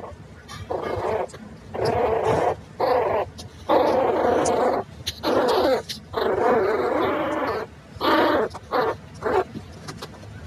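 Two rat terrier–chihuahua mix puppies growling at each other as they play-fight: a run of about eight rough growls, some short, some drawn out to a second or more.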